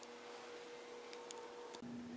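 Quiet room tone: faint hiss with a thin, steady hum that shifts to a lower pitch near the end.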